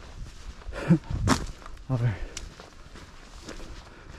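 A hiker's footsteps on a dirt trail strewn with dry leaves, with a sharp step about a second in. Brief voice sounds from the hiker come around one and two seconds in.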